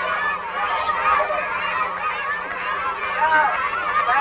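A crowd of children shouting and cheering, many high voices overlapping, over a faint steady low hum.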